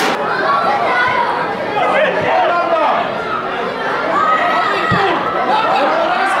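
Many voices talking and calling out over one another, an unintelligible chatter of spectators in the stands.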